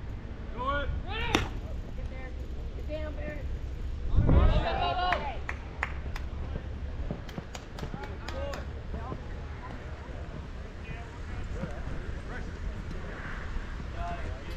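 Distant voices of players and spectators calling out at a youth baseball game, loudest in a shout about four seconds in, over a steady low rumble, with a few sharp clicks.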